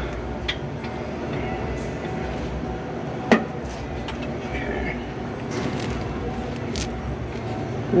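Duramax 6.6 V8 turbo diesel idling steadily, with one sharp click about three seconds in.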